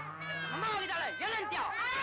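Several children shouting and squealing at once, high-pitched cries overlapping in a jumble.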